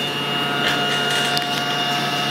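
LoadTrac II load frame's motor drive running with a steady whine as it drives the platen up under software load control.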